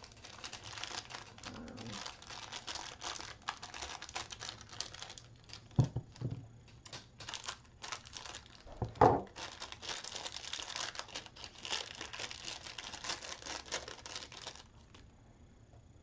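Crinkling and rustling of craft materials handled by hand at a table, with two louder knocks about six and nine seconds in, the second the loudest. The rustling stops shortly before the end.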